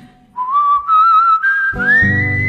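A whistled melody line: a single clear tone with vibrato that starts about a third of a second in and steps upward in pitch, over a pause in the backing music. The guitar-led accompaniment comes back in near the end as the whistled note rises.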